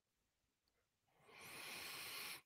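Near silence, then a soft hiss of breath into a microphone lasting about a second near the end.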